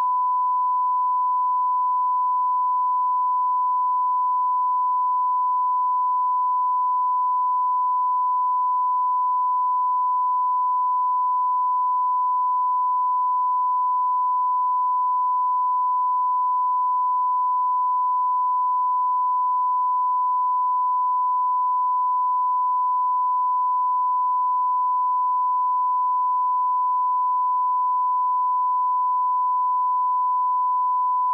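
Broadcast line-up tone, the standard 1 kHz reference tone that accompanies colour bars: a single pure, steady pitch held at a constant level.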